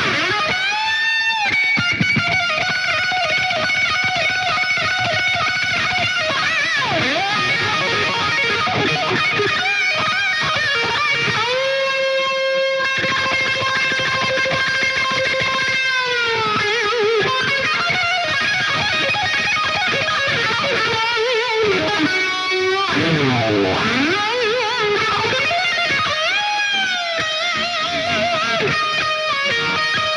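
Electric guitar solo on a Stratocaster-style guitar, played live: quick melodic runs and bends, a long held high note about twelve seconds in that slides down after a few seconds, and a deep swoop down in pitch and back up about three-quarters of the way through.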